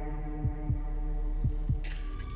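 Tense trailer score: a held, droning chord with a heartbeat-like pulse of paired low thumps about once a second. A rising whoosh comes just before the end.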